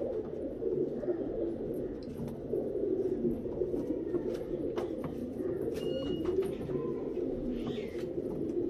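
Several male Teddy pigeons cooing, their low coos overlapping without a break, with a few short clicks among them.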